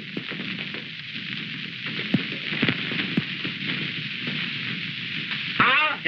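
Steady crackling hiss with scattered clicks from an early-1930s film soundtrack, heard once the music has stopped.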